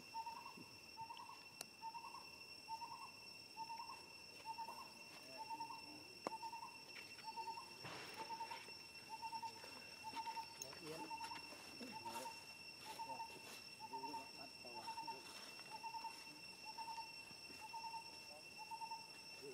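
A faint short animal call, repeated evenly about one and a half times a second, over a steady high-pitched insect drone.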